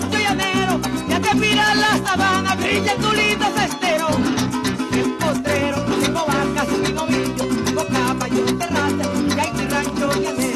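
Live llanero joropo: a woman singing with a wavering, vibrato-laden voice over a llanero harp and cuatro, with maracas shaken in a fast, steady rhythm.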